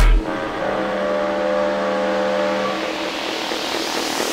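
Drum and bass DJ mix going into a breakdown: the drums and bass cut out just after the start, leaving held synth tones and a wash of noise that grows brighter toward the end.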